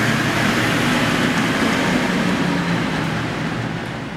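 Maybach sedan pulling away and driving off through a concrete parking garage, its engine and tyres making a steady loud noise that eases slightly toward the end.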